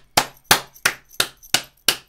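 One person clapping hands in a steady rhythm, about three claps a second, six claps in all.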